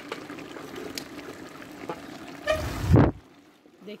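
Pot of tripe cooking down in a little water, bubbling and hissing steadily as the last of the water boils off. A short, muffled low rumble comes near the three-second mark, followed by a quieter stretch.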